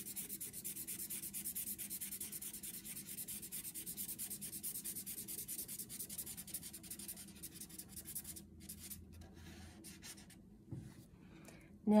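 Thin felt-tip marker scribbling on paper in quick, even back-and-forth strokes as an area is filled in. The strokes thin out and stop about eight seconds in, and a soft thump follows near the end.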